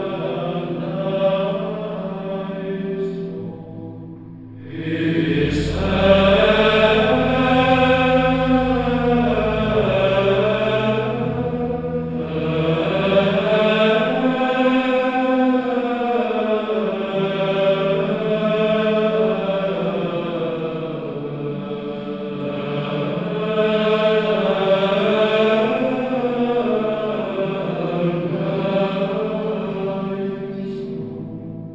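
Sung religious chant in slow, sustained phrases. One phrase dies away about four seconds in, and the next enters over a low held bass note.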